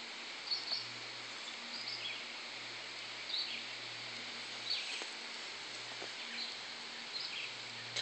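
Outdoor ambience: a steady background hiss with short, high bird chirps scattered through it every second or so, and a faint low hum that comes and goes.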